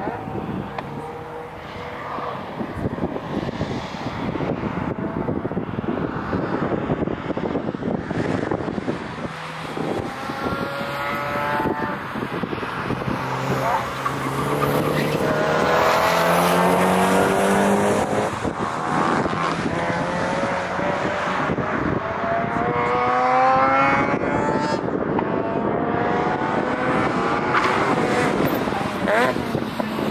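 Cars running hard around a racing circuit, their engines revving up through the gears, the pitch climbing and dropping back again and again at each shift. The engine sound grows louder about halfway through.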